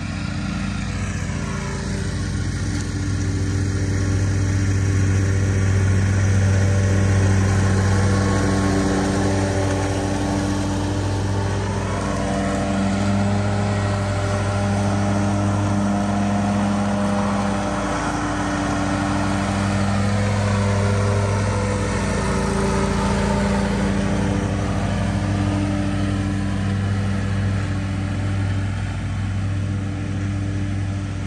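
Commercial lawn mower engines running steadily while cutting grass, the engine pitch dipping and rising slowly a few times.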